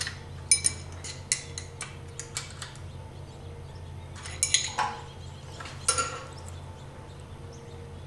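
Light metallic clicks and clinks of steel wrenches working a tappet and its adjusting screw on a Willys F-134 Hurricane engine while the exhaust valve lash is set with a feeler gauge. The clicks come in scattered clusters, a run of them in the first three seconds and a few more around the middle, over a steady low hum.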